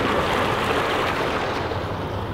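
Steady rushing noise with no distinct events, starting abruptly just before and easing slightly near the end.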